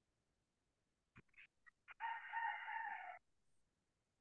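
A rooster crowing once: a few short opening notes, then a drawn-out final note of about a second, faint and thin as heard over a video call's audio.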